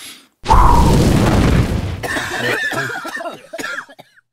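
A loud, long cartoon fart sound effect, heavy in the low end with a fast rattle, starting about half a second in. Coughing and groaning follow in the second half.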